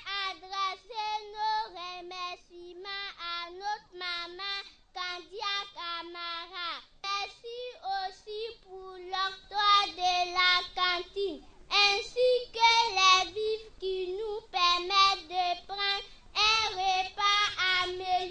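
Schoolchildren singing together, a song of thanks, in short phrases with brief breaks between them.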